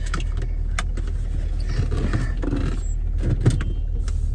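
Steady low rumble of a car idling, heard from inside the cabin, with a few sharp clicks and rattles: one about a second in and a cluster, the loudest, about three and a half seconds in.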